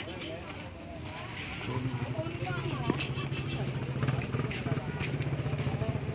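Busy market with shoppers and vendors talking around, and an engine starting to run steadily about two seconds in.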